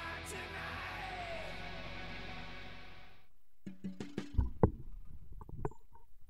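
Background guitar music that cuts off about three seconds in. A scatter of knocks and clicks follows, with a couple of sharper thumps, as the snare drum is handled and turned over onto its batter head.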